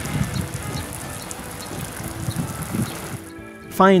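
Background music over a steady hiss of water spraying from garden sprinklers onto a freshly poured concrete slab; the hiss stops shortly before the end.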